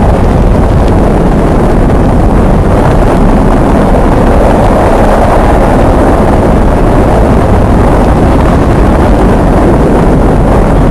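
Saturn V first-stage rocket engines firing at liftoff: a very loud, steady, deep rumbling noise with no breaks.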